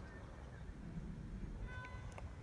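Quiet low hum inside a parked car, with a faint, brief high tone near the end.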